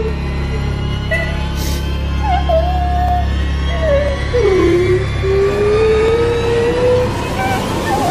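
Suspense film background score: a steady low drone under a slow, wavering melody line that glides up and down. The low drone thins out about five seconds in.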